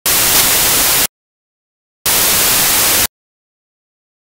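Two bursts of loud hissing static, each about a second long, cutting in and out abruptly with a second of dead silence between them.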